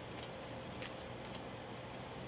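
Faint room hum with three soft, short ticks of paper as the thin pages of a large Bible are handled and turned.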